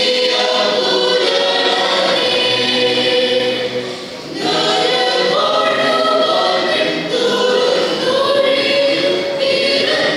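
Mixed choir of men's and women's voices singing a Malayalam Christmas carol, with a brief break between phrases about four seconds in.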